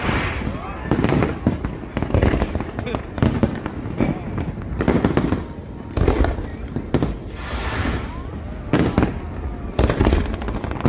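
Aerial fireworks bursting in a quick, irregular series of bangs, with the voices of a large crowd underneath.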